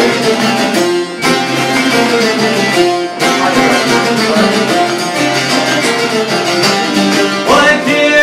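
Çifteli and other long-necked Albanian lutes playing a fast, evenly strummed instrumental passage of an Albanian folk song. Male singing comes back in loudly near the end.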